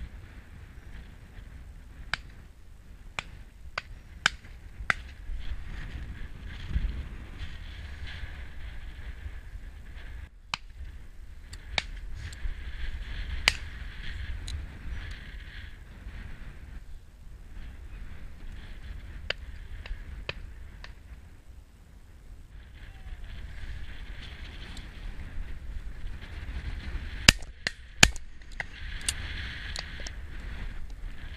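Two close shotgun shots from a Browning 525 over-and-under, fired about three-quarters of a second apart near the end. Earlier come many fainter sharp cracks, shots from other guns further down the line, all over steady wind noise on the microphone.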